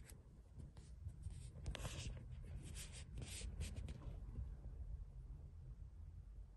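Faint scratchy rubbing and rustling in a run of short strokes from about a second in to about four seconds in, over a low steady hum: handling noise as the recorders on the table are reached for.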